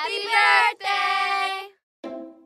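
A high voice singing two drawn-out sung phrases of a birthday song, the second cut off sharply just before the end.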